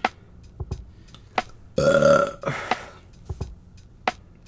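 A man burps once, loudly, about two seconds in, for under a second, with a weaker follow-on sound just after. Short clicks are scattered around it.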